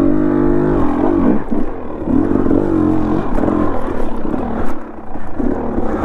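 KTM dirt bike's engine running at low speed over a rocky trail, its revs rising and falling with the throttle, and easing off briefly near the end before picking up again.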